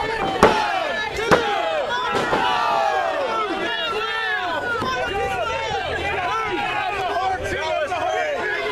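Crowd of spectators talking and shouting over one another around a wrestling ring. Two sharp slaps cut through about half a second and a second and a half in.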